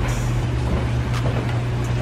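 A steady low hum runs throughout, with a few faint clicks and rustles of clothing being handled.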